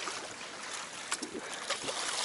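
A hooked fish thrashing at the water's surface beside a small boat, a steady splashing with a couple of sharper splashes about a second in and near the end.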